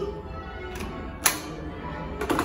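A hand stamp pressed down once onto a pilgrimage card on a wooden table: a single sharp knock a little over a second in, over soft background music.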